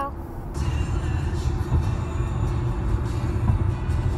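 Steady road and engine rumble heard inside a moving car's cabin at highway speed, beginning with an abrupt cut about half a second in.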